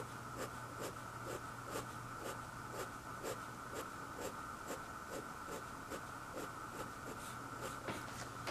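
Fine-tipped ink pen scratching across paper in short, quick hatching strokes, about two a second in an even rhythm.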